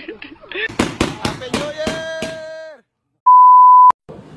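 People laughing, then after a brief gap a loud electronic beep near the end: one steady high tone lasting under a second that cuts off with a click.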